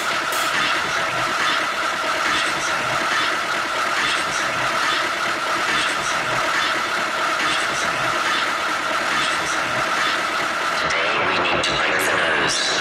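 Hard techno mix passage: a dense, noisy, engine-like texture with a steady high tone and faint regular ticks. Near the end the highest sounds drop away as a new section of the mix comes in.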